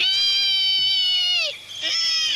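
A person squealing on command, in a long high-pitched squeal like a pig's, held for about a second and a half and dropping in pitch as it breaks off. A second, higher squeal starts near the end.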